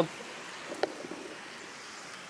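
Steady rush of a shallow creek flowing, with a single faint click just under a second in.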